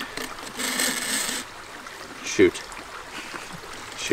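Water splashing and running out of a plastic-bottle minnow trap as it is handled, a burst lasting under a second starting about half a second in. A short voice sound comes near the middle.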